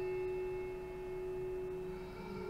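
Background score: a single sustained bell-like tone holding steady while its higher overtones slowly fade.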